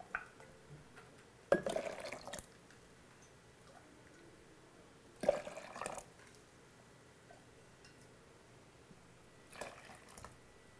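Brewed tea poured from a metal measuring cup into a blender jar: two short pours about 1.5 and 5 seconds in, each under a second, with a small splash near the end.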